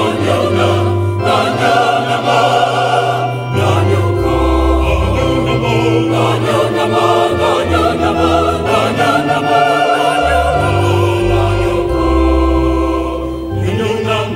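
A choir singing in parts, with long held notes over a deep bass line that moves to a new note every few seconds.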